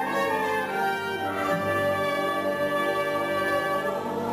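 Theatre pit orchestra playing slow, held chords with brass prominent.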